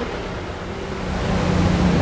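A motor running: a steady rushing noise with a low hum, swelling louder through the second half.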